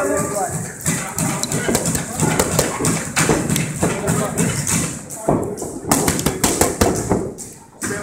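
Boxing gloves smacking into a trainer's focus mitts in quick combinations, a run of sharp slaps, with a dense flurry of strikes late on.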